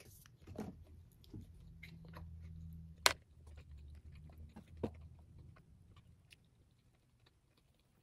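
A person chewing a meat stick close to the microphone, with scattered small clicks and one sharp click about three seconds in. The chewing dies away over the last two seconds.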